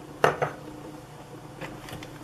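Steel beaters of an electric hand mixer knocking sharply twice against a glass bowl of creamed butter and sugar, with a couple of fainter clicks near the end, over the mixer motor's steady low hum.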